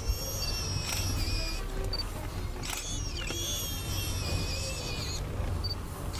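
Warthog squealing in distress while a leopard holds it by the throat: several long, high-pitched, wavering squeals, the longest about two seconds, over a low steady rumble.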